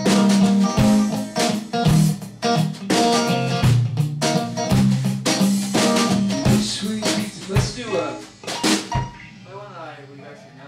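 Electric guitar and drum kit jamming, with drum hits about once a second under sustained guitar notes. The band stops on a last hit about nine seconds in and the sound rings out, with a voice starting just before the end.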